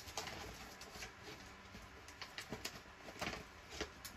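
Paper scraps being handled and shuffled: scattered light rustles and taps, about seven in four seconds, with a pigeon cooing faintly in the background.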